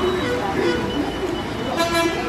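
A vehicle horn gives a short toot near the end, over a background of people talking.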